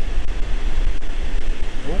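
Steady rush of air from the BMW i8's A/C blower through the dash vents, with a low rumble underneath.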